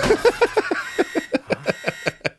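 A man laughing: a quick run of short bursts that spaces out near the end.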